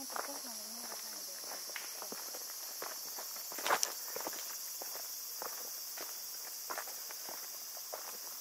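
Quiet outdoor forest ambience: a steady high hiss with scattered light clicks and ticks, a small cluster of louder ones a little before the middle. A short wavering voice-like sound is heard at the very start.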